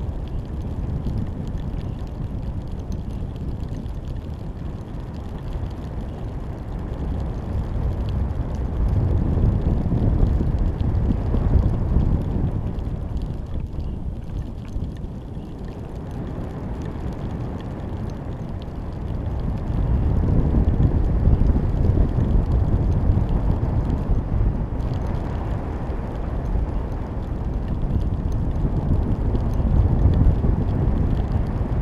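Wind buffeting the microphone of a camera hanging under a high-altitude balloon as air streams past the flight line: a deep rumbling rush with no tone, swelling and easing in slow waves, loudest around a third of the way in and again through the last third.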